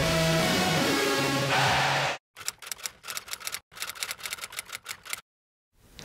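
Music that cuts off abruptly about two seconds in, followed by a quick run of typewriter keystrokes in two bursts with a brief pause between them.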